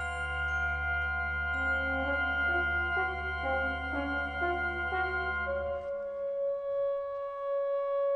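Tenor helicon playing a slow stepwise melody that settles on a long held note, over the fading ring of glockenspiel tones and a low sustained drone in the band that drops out about six seconds in.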